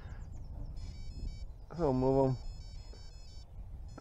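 Electronic bite alarm on a carp rod beeping: a quick run of faint, high electronic tones that step between several pitches for a couple of seconds, signalling a bite on the left rod.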